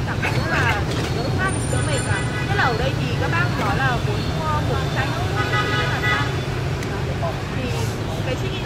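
Steady road-traffic rumble with voices over it.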